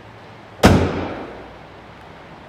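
The heavy steel bonnet of an Aurus Senat slammed shut: one loud bang about half a second in, with a ringing tail that fades over most of a second.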